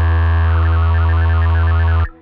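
Electronic music: a loud, sustained low synthesizer drone, with a rapid flurry of short, high electronic notes coming in about half a second in. The track cuts off abruptly at the very end.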